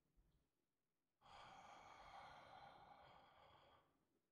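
A man's soft, slow deep breath out, like a sigh. It begins about a second in, lasts about two and a half seconds and then fades.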